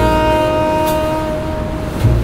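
Smooth jazz music: a saxophone holds one long, steady note over the band, with a light cymbal tick about a second in.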